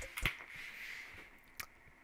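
Music stops right at the start. After that it is quiet room tone with a sharp click about a quarter second in, a fainter click a little past the middle, and a soft fading hiss.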